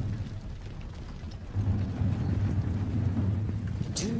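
Low, steady rumbling drone from a film soundtrack, easing off in the first second or so and then swelling back.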